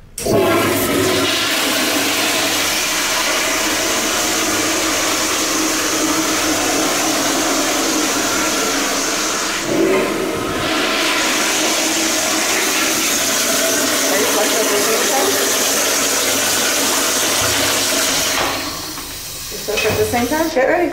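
Tankless commercial toilet flushing: a loud, steady rush of water that breaks off briefly about ten seconds in, starts again and dies away near the end.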